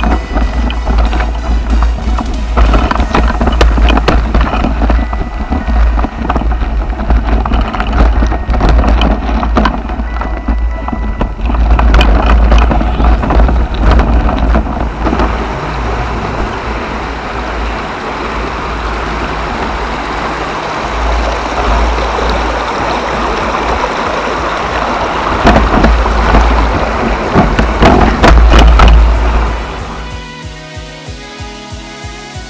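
Wind buffeting and rumbling on an action camera's microphone while riding a mountain bike over a rough gravel trail, with tyre crunch and a constant clatter of knocks and rattles from the bike. The noise swells and eases with the terrain, loudest a couple of seconds before the end.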